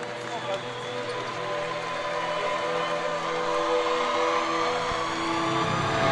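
Arena crowd noise under sustained, held musical tones from the arena's sound system, slowly growing louder, as a pregame build-up.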